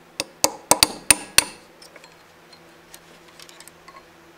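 Hammer striking a steel punch held inside a cast-iron lathe headstock: six sharp, ringing metal-on-metal blows in quick succession over about a second, then a few light clinks.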